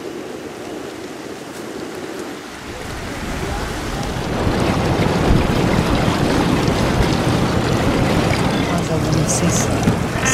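Steady wash of surf at first. From about three seconds in, louder wind rushing over the microphone and water noise from a small inflatable boat under way.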